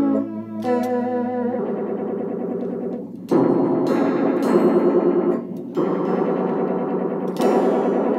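Guitar played through a Lil Angel chorus pedal: ringing chords with a wavering, shimmering pitch from the chorus modulation, with new chords struck about three, six and seven and a half seconds in.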